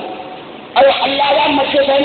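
Mostly a voice speaking: after a brief lull holding only a low hiss, the voice starts again abruptly just under a second in.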